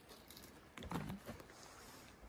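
Faint footsteps on packed, trampled snow: a few soft, irregular crunches, the clearest about a second in.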